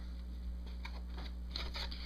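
A pack of cosmetic applicators being opened by hand: faint, scattered crinkles and rustles of the packet, over a steady low electrical hum.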